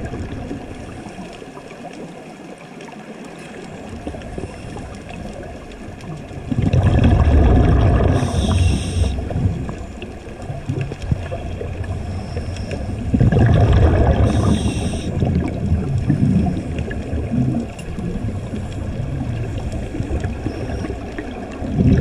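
Underwater sound of a scuba diver breathing through a regulator: bubbling exhalations rumble out about 7 and 13 seconds in and again near the end, each with a short hiss, over a steady underwater hiss.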